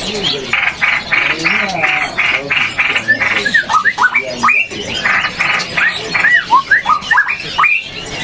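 Caged songbirds calling, with the whistles most likely from a straw-headed bulbul (cucak rowo) in song. A quick series of harsh, buzzy notes comes at about four a second, and from about three seconds in there are many short rising and arching whistles.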